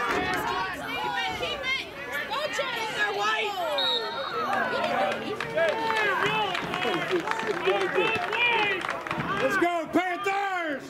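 Many voices talking and calling out at once: overlapping crowd chatter from spectators and players around a soccer field, with no single voice clear.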